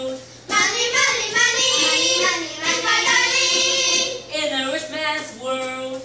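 Several children singing together into microphones, the voices loudest and fullest through the first two-thirds.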